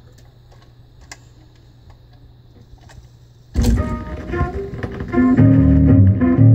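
A 45 rpm vinyl single playing on a console record changer: faint surface crackle and hum from the stylus in the lead-in groove, then about three and a half seconds in the song starts suddenly with guitar and bass.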